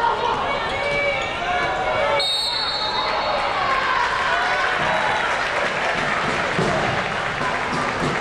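Basketball game sound on a hardwood court: indistinct players' and crowd voices with the ball bouncing, and a short, high referee's whistle about two seconds in.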